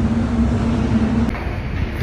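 Street background noise with a steady low hum, which stops abruptly a little over a second in and gives way to quieter indoor background noise.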